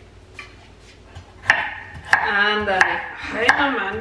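Knife chopping on a cutting board: sharp strokes about every two-thirds of a second, starting about one and a half seconds in.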